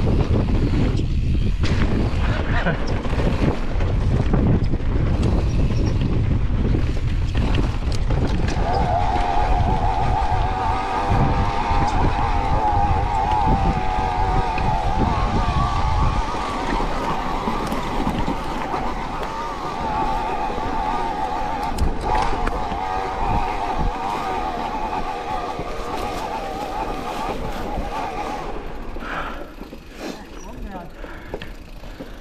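Mountain bike ride down a dirt trail: wind buffeting the camera microphone along with tyre and chassis rattle. About nine seconds in, a steady, wavering whine starts, and the rumble eases off a few seconds later.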